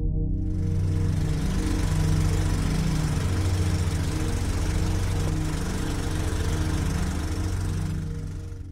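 Steady whirring clatter of a movie film projector, a sound effect that comes in about half a second in over low, sustained ambient music.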